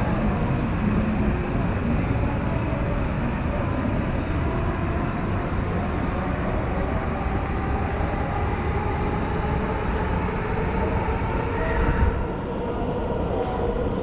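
A train running on elevated tracks close by: a steady rumble with an electric motor whine that slowly slides in pitch, easing off about twelve seconds in.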